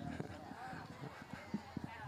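Faint laughter and murmuring from an audience reacting to a joke, with a few small clicks near the end.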